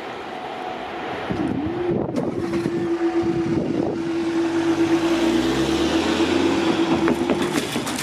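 Level crossing barrier mechanism running as the barriers rise after a train has passed: a steady single-pitched hum that starts about two seconds in and cuts off sharply near the end, with a lower sound falling in pitch beneath it.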